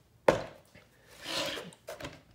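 A sharp knock about a quarter second in, then a soft scrape and a small click near the end: hands handling the Shark Ion robot vacuum's plastic case on a wooden workbench once its screws are out.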